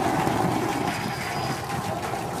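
Steady rushing roar of the Starship Super Heavy booster's Raptor engines firing the 13-engine landing burn.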